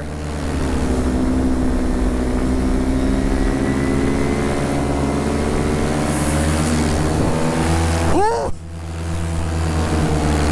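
Paramotor's two-stroke engine and propeller running at steady power. About eight and a half seconds in, the sound dips briefly and the pitch falls and rises again.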